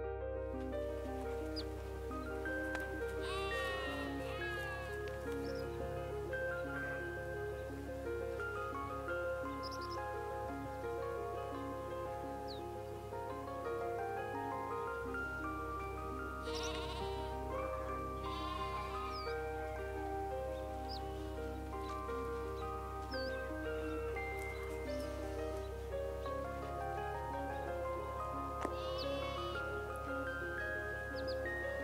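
Background music with a steady melody. Over it a warthog squeals in a few short, high, bleating cries: the first a few seconds in, two more near the middle and the last near the end.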